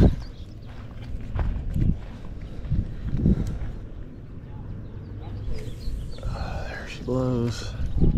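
Steady low wind rumble on the microphone, with soft handling knocks from a spinning rod and reel being worked just after a cast. A brief voice near the end.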